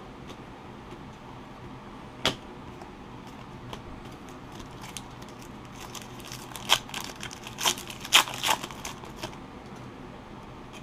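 A single click about two seconds in, then a foil trading-card pack wrapper being torn open by hand, crinkling and tearing in several sharp bursts over the last few seconds.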